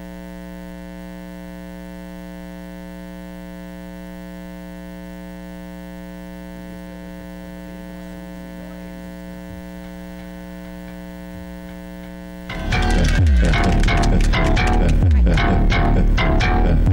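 Steady electrical mains hum, a stack of even buzzing tones with nothing else over it. About twelve and a half seconds in, loud dance music with a heavy bass beat suddenly starts.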